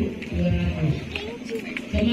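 People's voices talking, with a few low thumps.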